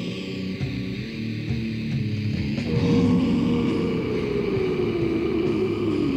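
Death/black metal band playing on a 1996 cassette demo recording. From about three seconds in the music gets louder and a long note slides steadily downward over the riff.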